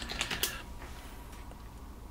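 A few quick computer-keyboard keystrokes as a password is typed at a sudo prompt, stopping about half a second in; then faint room tone.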